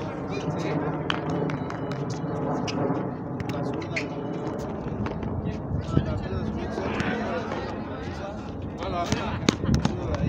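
Frontón ball being struck and smacking off the concrete front wall: several sharp smacks a second or two apart, the loudest about six seconds in and near the end. Indistinct talking from players and onlookers runs underneath.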